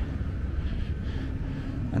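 Steady low outdoor background rumble with a faint hiss above it, unchanging through the pause.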